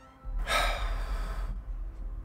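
Horror-film soundtrack: a low rumbling drone begins a moment in, and a loud breathy gasp lasting about a second sounds over it.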